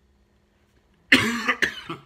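A man coughing close to the microphone: a short fit of about three coughs starting about a second in, the first the longest and loudest.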